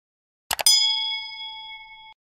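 Sound effect of a subscribe animation: two quick mouse clicks about half a second in, then a single bell ding that rings and slowly fades.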